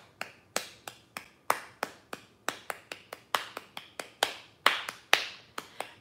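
Hand claps beating out a rhythm as a drum would, in a steady pulse that quickens to about four claps a second.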